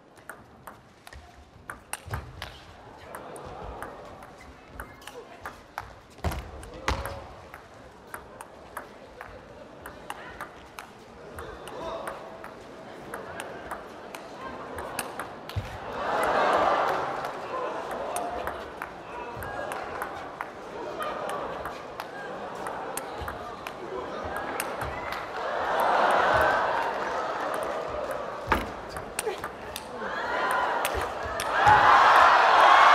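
Table tennis ball knocked back and forth in a long, fast rally, a steady run of sharp clicks off bats and table. The crowd's shouts swell twice, midway and near the end.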